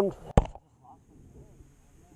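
A single sharp click about half a second in, after the tail of a spoken question. Then the sound drops to a low, quiet background with a few faint voice fragments.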